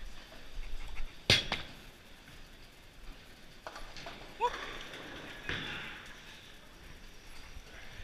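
Bowling alley noise: a sharp knock about a second in, then scattered lighter knocks and clatter of balls and pins, with a brief squeak midway.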